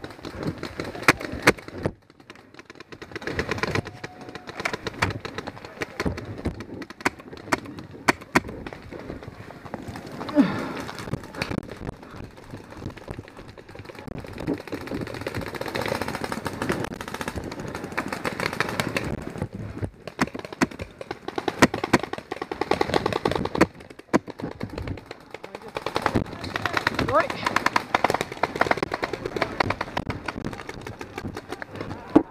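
Paintball markers firing: many sharp pops, some single and some in rapid strings, thickest in the second half, with voices shouting in the background.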